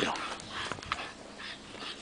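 Bulldog puppy breathing and snuffling in a few short, noisy puffs, with scattered light clicks.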